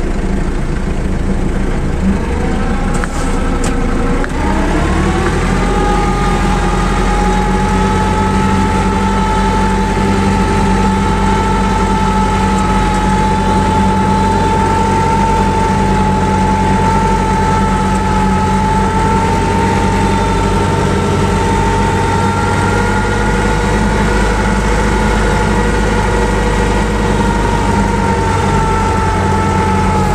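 Tractor engine running steadily under load, heard from inside the cab, with a steady whine over its drone. About four to five seconds in the pitch rises as it picks up speed, then holds steady.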